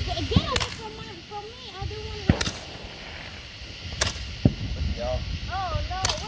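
Handheld Roman candle firing: three sharp pops, evenly spaced about a second and a half to two seconds apart.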